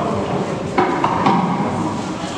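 Indistinct murmur of a crowd in a large, echoing church, with three sharp clinks close together around the middle.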